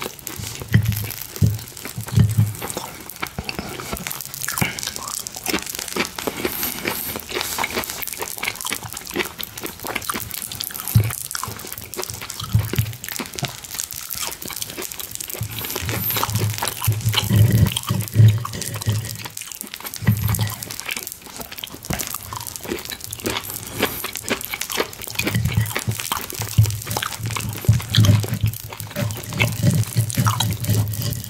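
Close-miked eating sounds: steak being chewed in clusters of low, soft mouth sounds, over many small sharp clicks and scrapes of a knife and fork cutting on a plate.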